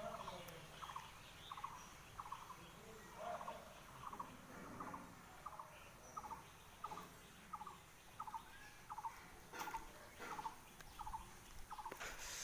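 A faint animal call repeated steadily about twice a second, each call a short buzzy trill.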